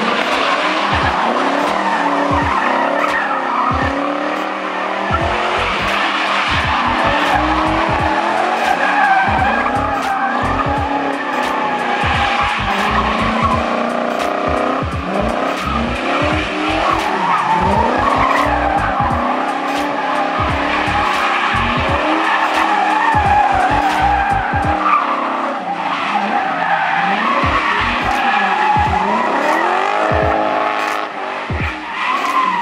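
Engine-swapped Ford Focus revving hard, its pitch rising and falling over and over, with tyres squealing continuously as it spins donuts.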